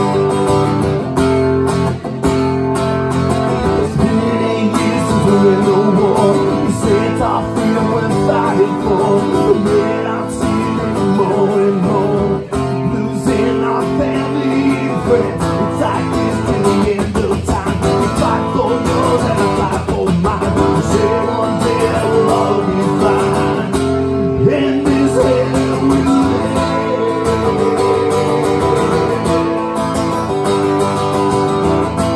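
Acoustic guitar strummed steadily through an instrumental passage of a solo song, its chords changing every second or two.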